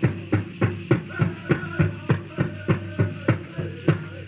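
Powwow drum group singing a jingle dress song over a large shared drum beaten in a steady, fast, even beat, about three strokes a second.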